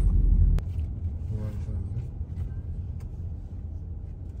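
Car cabin rumble from the engine and tyres, heard inside the car. It drops sharply with a click about half a second in, then goes on quieter and steady as the car rolls up to a stop.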